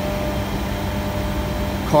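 Steady mechanical hum with a few faint steady tones, from machinery running in the background.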